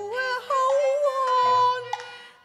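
A woman singing a Cantonese opera song in a high voice, holding long notes that slide and bend in pitch, with a short break about half a second in. A soft, low instrumental accompaniment sustains notes beneath her.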